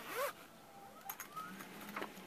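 Zipper being run around a black carry case for Bose QuietComfort 15 headphones to open it, faint, louder near the start.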